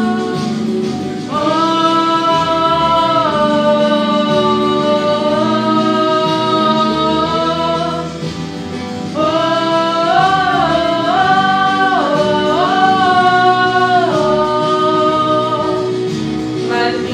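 A singer holds long notes over a steady musical accompaniment. The voice breaks off briefly about halfway, then returns with phrases that step up and down in pitch.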